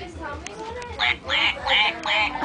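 Toy duck quacking: a fast run of short, repeated quacks, about three a second, resuming about a second in after a brief quieter stretch.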